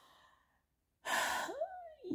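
A woman sighs about a second in: a breathy exhale that ends in a short voiced rise and fall of pitch.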